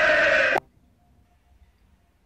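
A voice holding one high, steady note, cut off abruptly about half a second in, then near silence.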